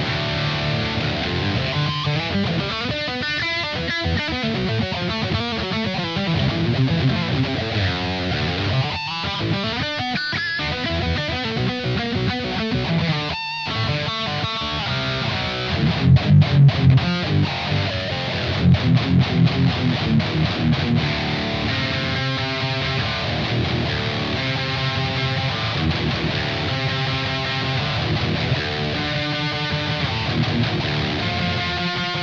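Schecter Black Reign Juan of the Dead V1 electric guitar in drop C with EMG active pickups, played through a Joyo Dark Flame distortion pedal into a Blackstar Amped 2. It plays high-gain metal riffs, with two runs of tight, sharply separated palm-muted chugs about halfway through.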